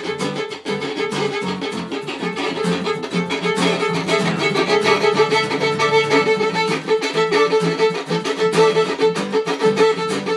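Fiddle played fast, a busy run of short bowed notes over one steady held note.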